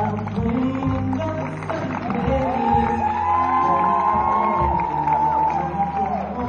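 Live pop music from a stage performance heard through a phone in the audience, with the crowd cheering over it.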